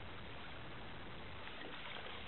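Faint, steady wash of open-water ambience, water and wind noise, with no distinct splashes.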